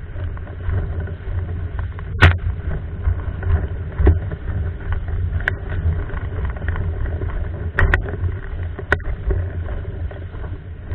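Windsurfer sailing across choppy water: a steady low rumble of wind and water rushing past the board and rig, broken by several sharp knocks, the loudest about two seconds in.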